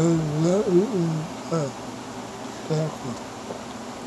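A man's voice making long, drawn-out sounds that glide up and down through the first second and a half, followed by a few short sounds, with no recognisable words.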